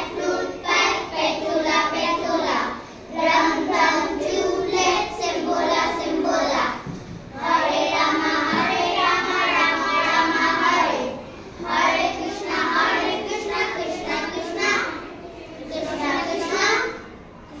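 A group of young children singing a song together, in phrases with short pauses between them.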